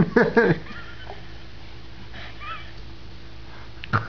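An adult laughs in short bursts, then a baby makes faint whimpering, gagging noises after a taste of butternut squash, with a louder cry-like sound breaking out just before the end.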